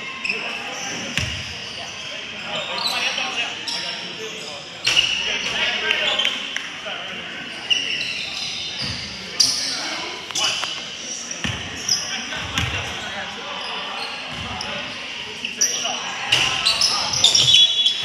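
A basketball bouncing on a hardwood gym floor in a series of sharp knocks, echoing in the large hall, with players' voices in the background.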